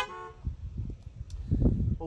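Several car horns honking together, cutting off shortly after the start, in answer to a call to honk; faint low rumbles follow.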